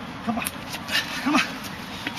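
Two short, sharp shouts of effort, about a second apart, during fast hand-to-hand Wing Chun sparring, with quick slaps of arms meeting between them.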